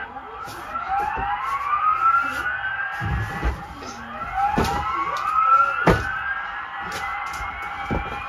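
Electronic siren sound effect from a toddler's plastic ride-on toy vehicle: two slow rising wails, one after the other, with a few sharp knocks in between.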